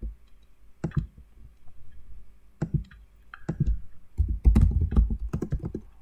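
Typing on a computer keyboard: a few separate keystrokes, then a quick run of keys about four seconds in.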